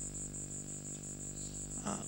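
Insects chirping steadily in a high, even pulse of about five a second, over a low steady hum.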